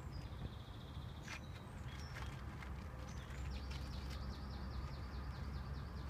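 Small songbirds calling. A thin held whistle comes near the start, then scattered chirps, then a fast trill of repeated notes through the second half, all over a steady low rumble with a few faint clicks.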